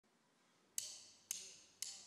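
Three sharp percussive clicks, evenly spaced about half a second apart, counting in the band's tempo before the song starts.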